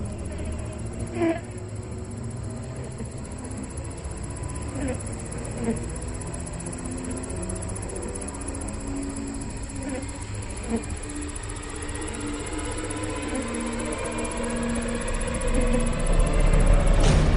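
Film soundtrack: a low steady drone with a few short whimpering cries scattered through the first half, swelling in loudness near the end.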